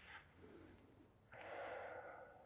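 Near silence, then a faint breath drawn in, lasting under a second, a little past halfway through.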